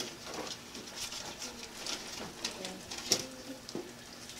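Faint voices and room noise, with a sharp click a little after three seconds in.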